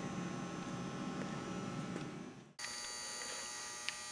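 Faint steady background hum and hiss, room tone with no distinct event. About two and a half seconds in it drops out briefly, then resumes at a similar level.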